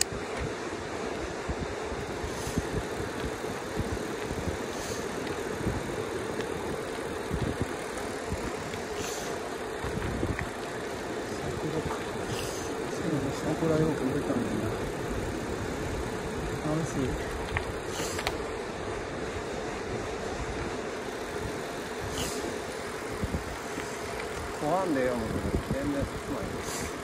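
Yamaha YPJ-TC e-bike rolling along an asphalt road: a steady hum of tyre and wind noise, with a few light clicks.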